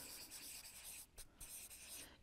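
Felt-tip marker writing numbers on flipchart paper: faint, scratchy strokes, with short breaks a little after a second in as the tip lifts between strokes.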